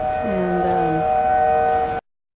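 Outdoor tornado warning sirens sounding a steady tone, several pitches held together. A shorter, lower pitched sound dips and then holds under them from about a quarter of a second in until about halfway through.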